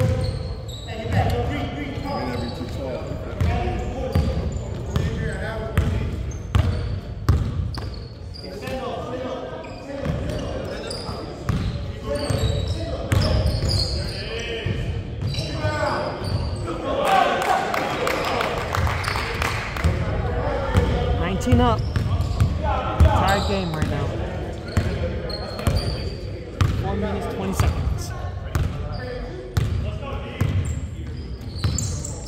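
A basketball bouncing repeatedly on a hardwood gym floor, with players' indistinct voices, all echoing in a large hall.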